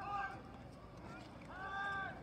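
Distant shouting voices at an outdoor football game: a brief call at the start and one long held yell near the end, over steady open-air background noise.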